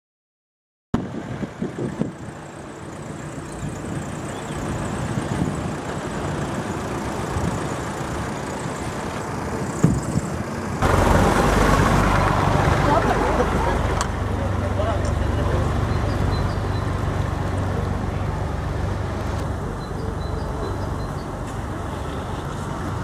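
Cabin noise of a moving car: engine and tyre rumble on the road, with a few knocks in the first seconds. It jumps suddenly louder about eleven seconds in and stays steady after.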